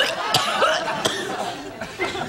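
A person's short vocal sounds, with two sharp bursts about a third of a second and a second in, over a studio audience laughing.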